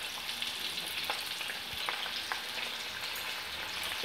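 Hot oil sizzling steadily in a kadai as small pieces fry in it, with a few faint pops.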